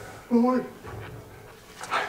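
A man's voice from the drama's soundtrack: one short spoken question in Korean about a third of a second in.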